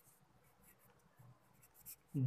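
Faint, short scratching strokes of writing, in near-silent room tone.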